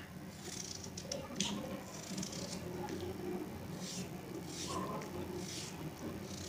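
Small kitchen knife slicing through a raw peeled potato held in the hand: faint, irregular cuts about once a second, over a low steady hum.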